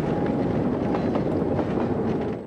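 A train passing right outside an apartment window: a steady, loud noise of wheels running on the track, heard from inside the room.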